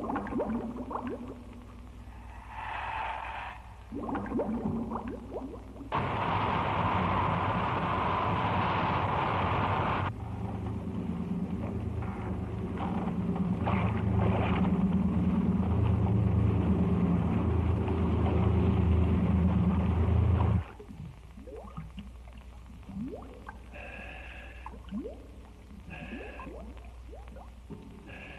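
Underwater dive sound: soft bubbling and gliding gurgles from scuba breathing. In the middle there is a few seconds of loud hissing. It is followed by about ten seconds of a steady low boat-engine hum that stops abruptly, and then the underwater bubbling returns.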